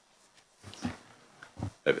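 A short pause in speech, with a few brief, quiet vocal noises and then a spoken word near the end.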